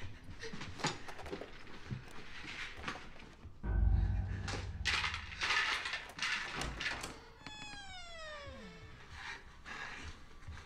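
Horror-film score and sound design: scattered knocks, then a heavy low impact with a held tone about four seconds in. Noisy rushes follow, and a pitched wail slides steeply down in pitch over about a second, near the end.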